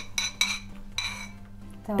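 A spoon clinking and scraping against a bowl as thick mayonnaise dressing is scraped out onto a salad, with a few light clinks in the first second.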